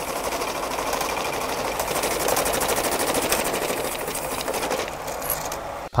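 Banknote counting machine running a stack of notes through at speed: a rapid, even fluttering whir.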